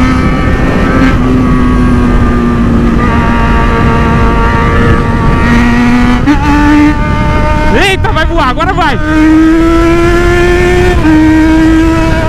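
Yamaha XJ6 motorcycle's inline-four engine running at highway speed, with wind rushing over the microphone. About halfway through, the engine note dips and then steps up. It then climbs steadily under hard acceleration, drops once with a gear change near the end, and keeps climbing.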